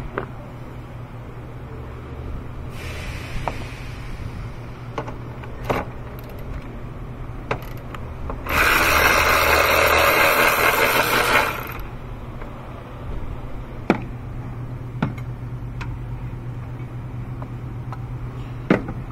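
A ratchet on a 13 mm socket and long extension backs out a battery-bracket bolt, clicking rapidly for about three seconds midway. A few single knocks of the tool against metal come before and after.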